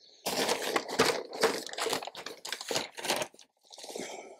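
Dry potting compost being scooped up with a plastic tub and poured into a glass tank: a run of irregular crunchy rustles, then a fainter rustle near the end.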